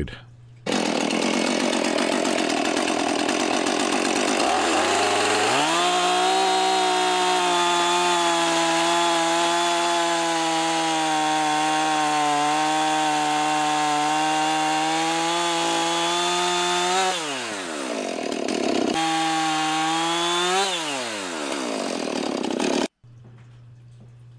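Husqvarna 450 Rancher two-stroke chainsaw running and cutting through a maple log. About five seconds in it revs up to a high, steady pitch held for about eleven seconds, drops back, then revs up once more briefly and falls off again before stopping suddenly near the end.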